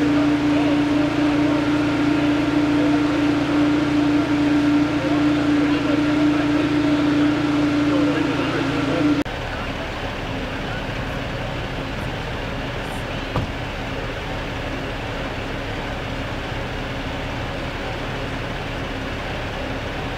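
Steady engine-like hum, such as an idling fire engine. About nine seconds in it cuts to a quieter, slightly lower hum.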